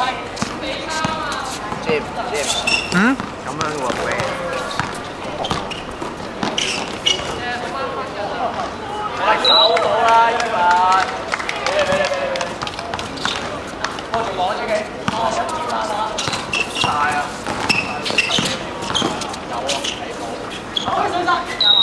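A basketball dribbled and bouncing on an outdoor court, with repeated short thuds, amid players' shouts and talk during a game.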